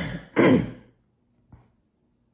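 A woman coughing into her fist: two short, harsh coughs, the second about half a second in.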